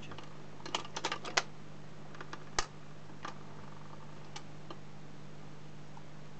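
Dansette record player's auto-changer going through its change cycle: a cluster of light mechanical clicks about a second in, a louder clunk about two and a half seconds in as the record drops, then a few faint clicks, over the steady low hum of the running turntable.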